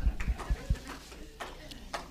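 A quick run of dull, low thumps, about five a second, picked up through a stage microphone; they stop a little under a second in, followed by a couple of sharp clicks near the end.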